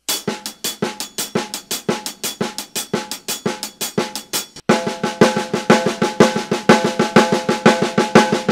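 Snare drum played with sticks in a steady, even run of triplet strokes, a shuffle timing exercise. A little past halfway the playing breaks off briefly and restarts louder, the drum ringing more between strokes.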